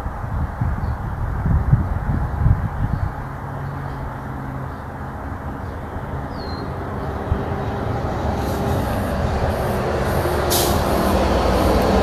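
A motor vehicle running nearby: low rumble with irregular buffeting for the first few seconds, then a steady engine hum that slowly grows louder.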